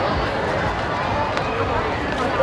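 Crowd of people talking as they walk along a busy pedestrian street, many voices overlapping into a steady babble.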